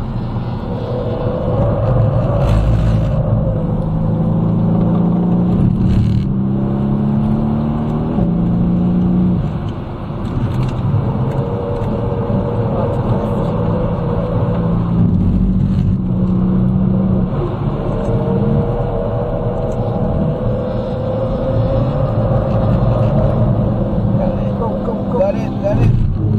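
Mercedes-AMG C63 engine under hard track driving, heard from inside the cabin. Its pitch climbs and then drops again several times, with a short lift off the throttle about ten seconds in.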